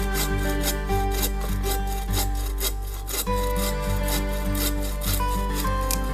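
Hand saw cutting through a wooden log in quick back-and-forth strokes, about three a second, which grow less distinct in the second half, over background music.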